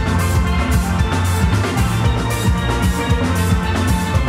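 A steelband playing: many steel pans struck with sticks, ringing notes over deep bass tones, with a steady beat.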